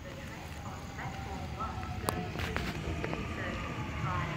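Train pulling into the station platform: a steady rumble that grows slightly louder, with a few sharp clicks.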